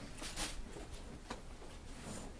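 Faint handling of a small plastic tuberculin syringe while a dose is drawn up: a short soft hiss and a light click about a second later, over quiet room tone.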